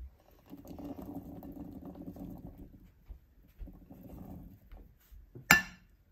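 Fresh blueberries tipped from a bowl into a stand-mixer bowl of banana bread batter, rolling and pattering in two stretches. A single sharp knock near the end is the loudest sound.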